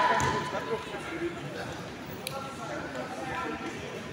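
Voices echoing in a large sports hall, loudest at the start, with one sharp knock about two seconds in.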